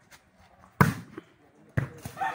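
Two sharp slaps of a volleyball being struck by hand as a rally opens, about a second apart, the first louder.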